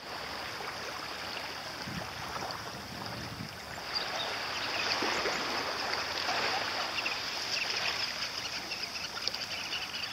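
Steady wash of small waves lapping and trickling at the water's edge, a little louder from about four seconds in.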